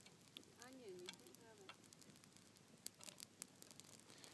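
Near silence: faint steady hiss with a few soft clicks, and a brief faint voice about a second in.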